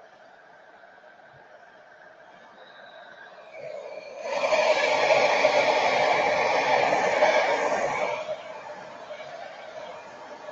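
A steady rush of blown air, switched on about four seconds in and cut off about four seconds later.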